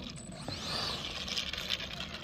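The 64 mm electric ducted fan of an FMS F-35 Lightning V2 RC jet whining as the model taxis, its pitch rising and falling once around half a second in.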